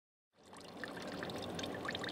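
Oil pouring from a container in a thin stream, a steady liquid pour with small splashy ticks, fading in from silence about half a second in.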